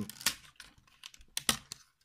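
Hard plastic clicks and clacks of a Transformers Sixshot action figure's wing and body parts being moved by hand: a few short sharp clicks, the loudest pair about one and a half seconds in.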